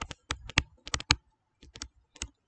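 A pen stylus clicking and tapping against a writing surface while words are handwritten: about ten sharp, irregular clicks.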